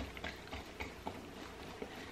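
Faint sound of a wire whisk slowly stirring thin chocolate cake batter in a stainless steel mixing bowl, with light scattered ticks of the wires against the metal.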